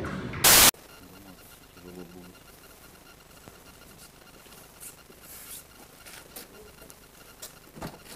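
A short, loud burst of hiss-like noise about half a second in, then quiet underground car-park ambience with faint distant voices early on and a few soft scattered clicks.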